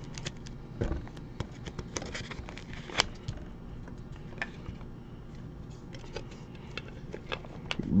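Light clicks, taps and rustles of hands handling trading cards, plastic sleeves and hard plastic card holders, with one sharper click about three seconds in.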